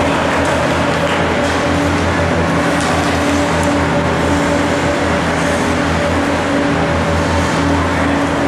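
Steady mechanical hum with a constant hiss filling the ice arena, with a few faint clicks and scrapes of skates and sticks on the ice during play.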